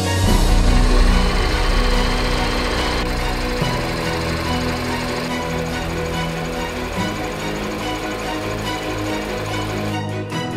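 Rapid mechanical clatter of an 8 mm film projector running, over background music; the clatter is loudest about a second in, then settles.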